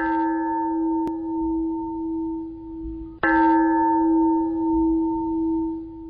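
A bell struck twice, about three seconds apart, each strike ringing on in a sustained tone that swells and fades slowly.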